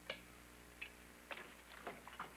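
A few sharp clicks and small knocks as a leather dental instrument case is handled and opened on a table.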